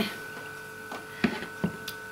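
A few light knocks from kitchen utensils being handled on the worktop, in the second half, over a steady electrical hum.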